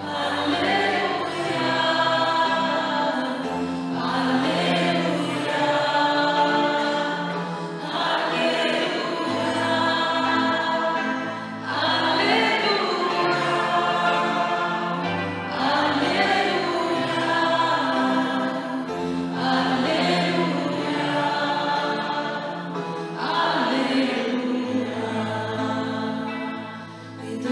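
A choir sings the Gospel acclamation at Mass in phrases a few seconds long. Sustained low accompanying notes change in steps beneath the voices.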